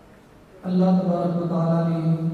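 A man's voice reciting Quranic Arabic in a drawn-out melodic chant (tajwid) over a microphone, starting about half a second in after a short pause and holding long, steady notes.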